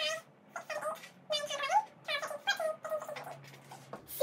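A fast-forwarded woman's voice, pitched up into short, chirpy squeaks, about two a second.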